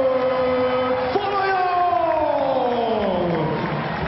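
A ring announcer's voice drawing out the winner's name in two long, held calls, each sliding slowly down in pitch.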